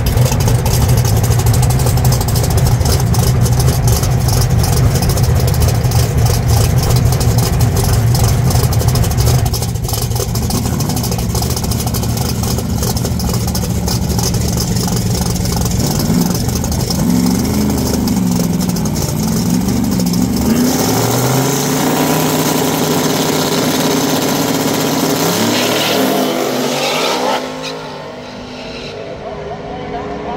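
Drag race car's engine running loud with a rapid clatter. About halfway through it revs up and down in short swings, then climbs steadily in pitch as it accelerates away. Near the end it drops off and fades with falling pitch.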